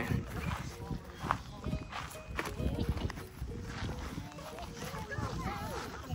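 Light clicks and knocks of hollow plastic Easter eggs being handled and pried at, the sharpest click about a second in, with faint children's voices in the background.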